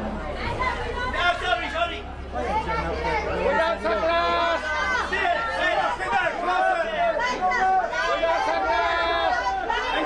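Several people talking and calling out at once in overlapping chatter, over a low steady hum that stops about six seconds in.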